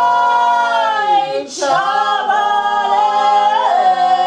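A woman singing unaccompanied in long, held notes, with a short breath about a second and a half in.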